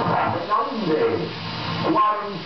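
A man's voice on an old broadcast recording, beginning to read out election figures ('42') near the end, over a steady background hiss.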